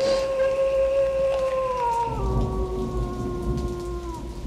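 Recorded rain-and-thunder ambience with a low rumble, under a single held musical tone that steps down in pitch about halfway through.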